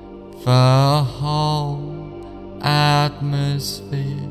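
Slow meditative background music: four long chanted vocal notes over a steady drone.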